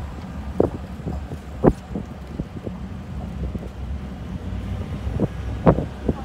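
Wind buffeting the microphone over the steady low rumble of a pickup truck on the move, heard from its open bed. A few short, sharp spikes break through, near the start and again near the end.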